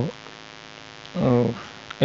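Steady electrical mains hum on a voice-over microphone, with a short wordless vocal hesitation sound about a second in.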